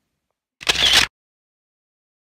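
A single short, sharp noise burst, about half a second long, a little over half a second in, between stretches of dead silence: a sound effect laid over a cut between clips, with a camera-shutter character.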